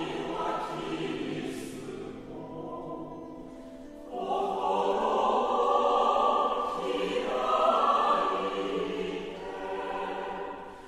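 A choir singing a Mass hymn in long held notes. It grows softer for a couple of seconds, then a louder phrase comes in about four seconds in.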